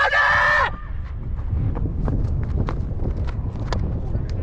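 A cricketer's loud, high-pitched shouted appeal for LBW, cut off under a second in. After it, wind rumbles on the microphone with a few faint clicks.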